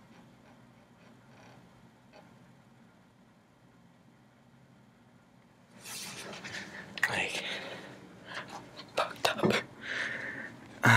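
Very quiet room with a faint low hum for about six seconds, then rustling, knocks and breathy whispering sounds as the camera is picked up and moved in the dark.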